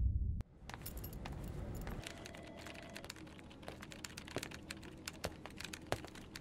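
A music tail dies away about half a second in. After it, computer keyboards are typed on in an open-plan office: irregular, scattered key clicks over a faint steady room hum.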